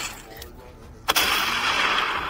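A sudden, harsh burst of noise begins about a second in and lasts over a second.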